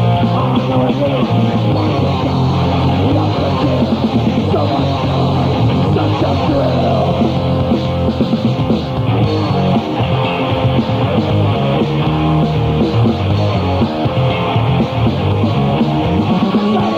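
Thrashcore band playing live: distorted electric guitar, bass and drums, loud and dense with no break. It is heard as a narrow-band live radio broadcast recording.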